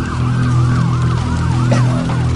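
Emergency vehicle siren in fast yelp mode, its pitch rising and falling about four times a second, over a low steady hum.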